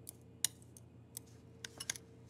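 Metal spoon stirring ground almonds, sugar and soft butter into a paste in a glass bowl: a handful of light, irregular clicks of the spoon against the glass.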